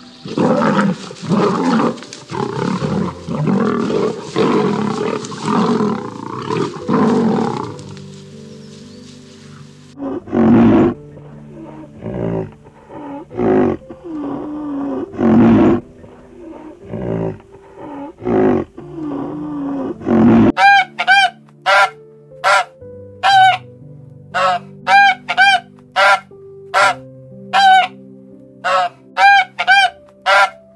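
Soft background music throughout, with animal calls laid over it: for the first eight seconds a lion's rough roaring growls, pulsing about once a second. From about ten seconds comes a string of low grunts, one every second or so. From about twenty seconds there is a quick series of short, clear honking calls from a swan, about two a second.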